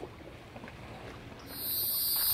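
Faint lakeside ambience of water lapping at floating docks, then, about one and a half seconds in, a loud, steady high-pitched insect chorus sets in and drowns it out.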